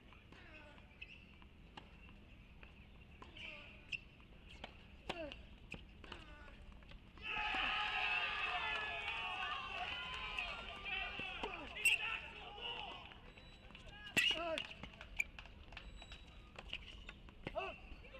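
Faint court-side sound of a tennis rally: a few sharp racquet-on-ball strikes and ball bounces. Background voices rise for several seconds in the middle.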